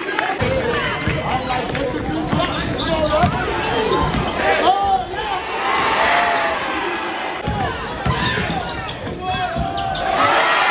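Live basketball game in a gym: the ball bouncing on the hardwood court, with repeated thumps, over shouting and chatter from players and spectators.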